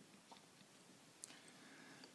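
Near silence with three faint clicks of a fine screwdriver against a tiny grub screw in the binocular's metal band.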